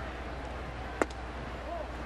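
A single sharp pop about a second in: a pitched baseball smacking into the catcher's mitt. Steady ballpark crowd noise with faint distant voices runs underneath.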